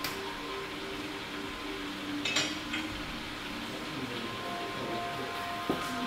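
Soft background music, with a pair of sharp metal clinks about two and a half seconds in and a single knock near the end as an espresso portafilter is handled at the grinder and tamping stand.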